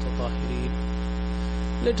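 Steady low electrical mains hum with a buzz of overtones, carried on the microphone's recording, with a voice coming in near the end.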